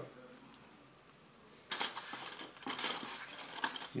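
Small plastic toy-train accessory pieces rattling and clicking as they are handled, a quick run of light clicks starting a little before halfway and lasting about two seconds.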